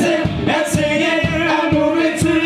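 Live pub band playing a funk/disco cover, with sung notes held over a steady beat.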